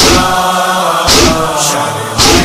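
A noha, the Shia Muharram lament, chanted on a long held vowel, with chest-beating (matam) slaps keeping a steady beat about once a second.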